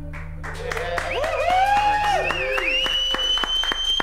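The last low bass note of a live band rings out while a small group starts applauding and cheering with rising and falling whoops, one long high whoop held to the end.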